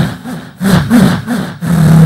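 A mimicry artist imitating an idling engine with his voice into a stage microphone: low, chugging pulses about three a second, then a held low drone from about one and a half seconds in.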